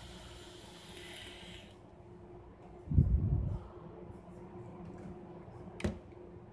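Quiet room with a steady low hum, broken by one dull low thump about three seconds in and a short click near the end.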